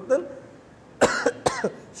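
A person coughing twice in quick succession, about a second in and again half a second later.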